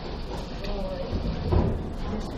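A claw machine's claw lowering into a pile of plush toys, a faint mechanical movement beneath a steady low rumble of room noise and background chatter.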